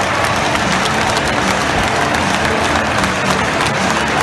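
Large football stadium crowd cheering, shouting and clapping in a steady loud roar, the home fans celebrating a goal.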